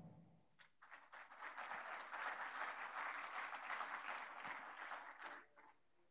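Faint audience applause. It starts about half a second in, builds to a steady patter of many hands clapping, and dies away shortly before the end.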